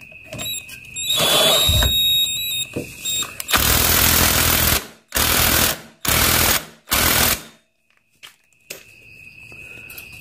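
Power impact wrench hammering the clutch centre lock nut tight on a four-stroke motorcycle engine, in separate bursts: a short one about a second in, then one long and three shorter bursts a few seconds later, until the nut is fully tight.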